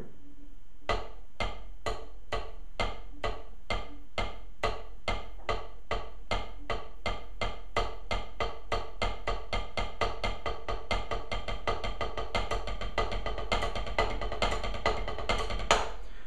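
Wooden drumsticks playing a paradiddle (right, left, right, right, left, right, left, left) on a rubber practice pad. The strokes start slowly, about two a second, gradually speed up, and end on one louder stroke.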